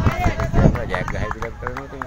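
People's voices talking and calling out, with scattered short sharp clicks.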